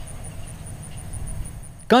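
Outdoor ambience: a steady low rumble and hiss, with a faint high-pitched pulse repeating about six times a second. A man's voice starts right at the end.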